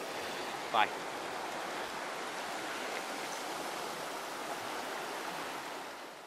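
Shallow stream running over a stony bed: a steady rush of water.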